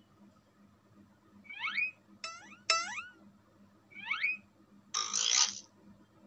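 Cartoon sound effects from an educational animation: several quick rising, whistle-like glides in clusters, then a short whoosh near the end as the slide changes.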